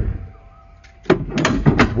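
Electrically retractable tow bar swinging out from under a car's rear bumper. There is a thump at the start and a faint steady motor hum through the first second, then louder mechanical clunking in the second half.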